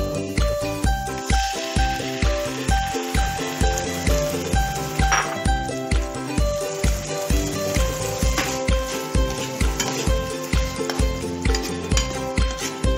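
Canned food and chopped onion sizzling as they fry in oil in a frying pan, under background music with a steady beat of about two kicks a second.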